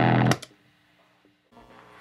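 A rock band with distorted electric guitars plays a loud held chord that cuts off about half a second in. Near silence follows, and a faint sound begins near the end as the next track starts.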